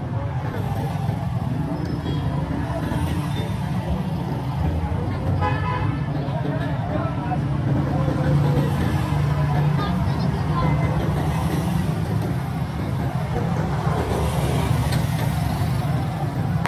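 Street traffic with motorcycles and cars running past in a steady rumble. A short horn toot sounds about five seconds in, and a motorcycle passes close near the end.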